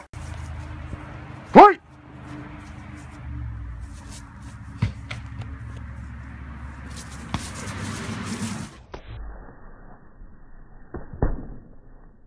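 A short laugh, then a loud voice cry about a second and a half in. After that a low, steady rumble with a few sharp smacks of padded foam weapons striking.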